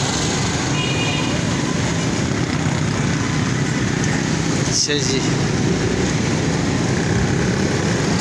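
Steady engine and street-traffic noise heard from the back of a moving motorcycle in busy traffic, with a brief voice about five seconds in.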